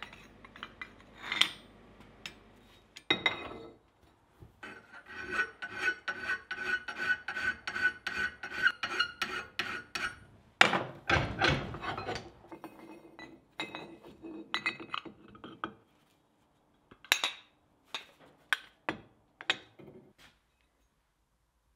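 Steel being struck with a hammer on an anvil: a quick run of light, ringing taps, a louder cluster of blows partway through, then a few scattered clinks of metal on metal.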